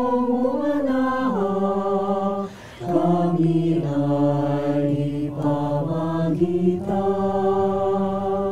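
Mixed-voice choir singing unaccompanied in long held chords that step from note to note, with a short break for breath about two and a half seconds in.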